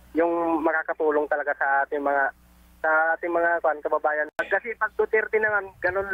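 Speech: a person talking, with a short pause about two and a half seconds in.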